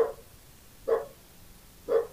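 Three short, sharp animal calls about a second apart, each dying away quickly.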